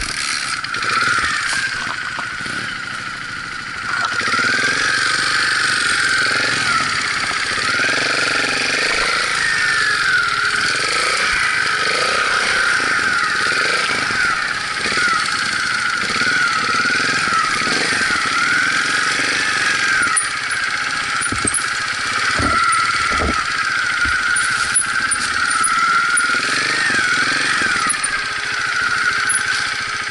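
Trials motorcycle engine running under constantly changing throttle, its pitch rising and falling, with scattered knocks from the bike over rough ground.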